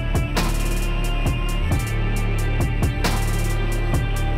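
Title theme music with a steady beat: deep drum hits that drop in pitch over a held bass, with a fast ticking on top. Two loud crashing hits land about half a second in and about three seconds in.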